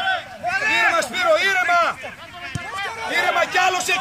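Men's voices shouting and calling out over one another on a football pitch, loudest about a second in, with a single short thud a little past halfway.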